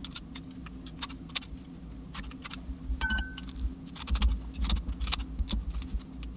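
Steel kitchen scissors snipping wet aged kimchi in a ceramic bowl, with metal chopsticks clicking against the blades: a run of sharp, irregular metallic clicks and snips. A short metallic ring about three seconds in, and a few dull bumps in the second half.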